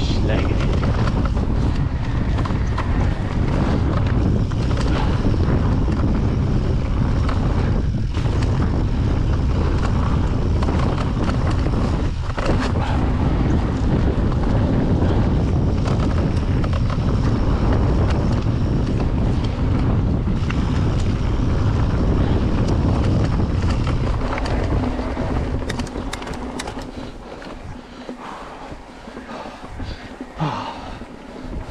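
Wind buffeting an action camera's microphone and tyres rumbling over a dirt trail as an e-mountain bike rides downhill. The noise is loud and steady, then drops away about five seconds before the end, leaving some light clicks and rattles.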